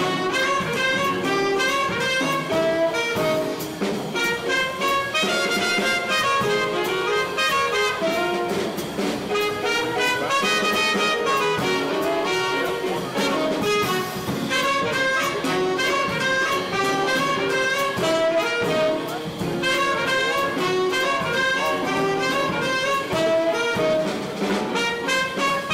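Live small-group jazz: tenor saxophone and trumpet playing a quick line of short notes together over upright bass, drums and piano.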